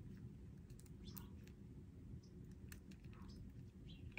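Near silence with a few faint, scattered clicks from the small gold metal snap clasps of leather bag straps being handled.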